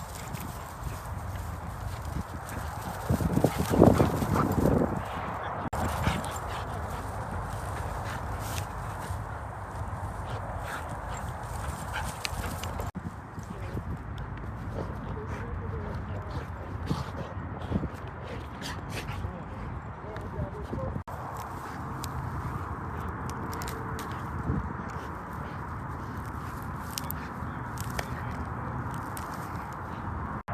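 Golden retriever on a walk: a brief, loud dog vocalization about four seconds in, then footsteps and small clicks over steady outdoor noise.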